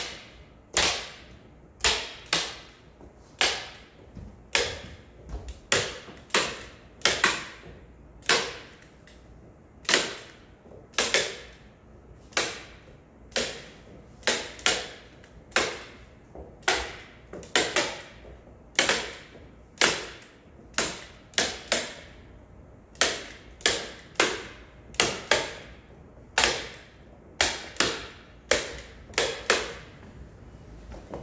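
Staple guns firing over and over as a white paper covering is fastened along the edges of a wooden panel: sharp snaps at an irregular pace of roughly one to two a second, sometimes two in quick succession.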